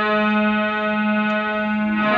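Harmonium holding one steady chord over a sustained low drone note, its reeds sounding without change.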